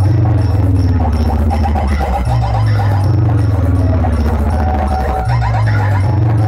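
Loud pop-bass dance music played through a towering DJ speaker stack (a 'B cabinet' box), dominated by deep droning bass notes. Each bass note holds for about three seconds, shifting pitch about two seconds in and again about five seconds in, with a falling tone sliding down over each note.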